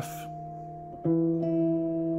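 Guitar playing two-note chords. A D-sharp and F dyad rings and fades, then about a second in a new dyad, E and E an octave apart, is plucked and rings on.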